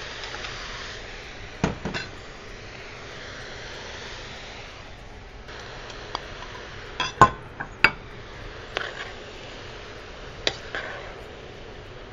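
Glass bowls clinking and knocking against the rim of a stainless steel pot as chopped vegetables are tipped in, then a spatula knocking inside the pot as they are stirred. A handful of separate sharp knocks over a steady faint hiss; the loudest pair comes a little past the middle.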